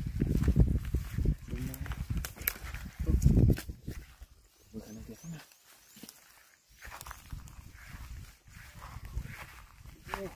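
Rustling and footsteps through brush and grass, with heavy low thumps in the first second and again about three seconds in, and a few short muffled vocal sounds.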